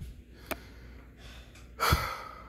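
A person's sharp, breathy gasp near the end, after a single small click about a quarter of the way in.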